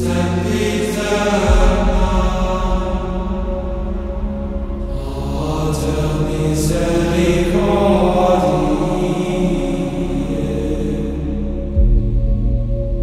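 Slow chant-style vocal music in the manner of Gregorian chant, held notes over a low sustained drone; the drone shifts pitch about a second and a half in and again near the end.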